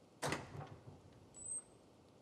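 A door being opened: a sharp clack about a quarter second in with a short rumble after it, then a brief high-pitched squeak about one and a half seconds in.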